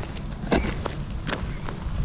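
Footsteps on loose gravel, a few sharp steps roughly three quarters of a second apart.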